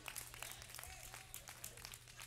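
Faint, scattered hand claps from a congregation, irregular and sparse, over a steady low electrical hum.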